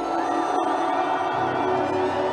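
Ambient background music: held, steady tones with a slowly wavering high melody line above them.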